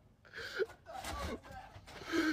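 A person gasping, with breathy, wordless voice sounds.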